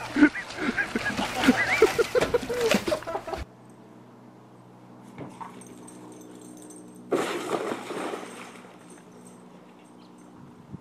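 Ice-choked pool water splashing and sloshing as a person wades through it, with shouting voices over it; the sound cuts off abruptly a few seconds in. A quiet stretch follows, broken by one short burst of noise near the middle.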